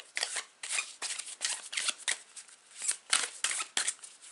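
A deck of oracle cards being shuffled by hand, cards slid and dropped from one hand to the other. It makes an irregular run of short papery swishes and taps, several a second.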